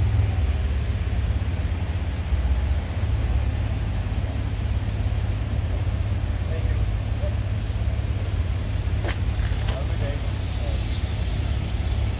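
Street traffic noise with a heavy, steady low rumble, and a single sharp click about nine seconds in.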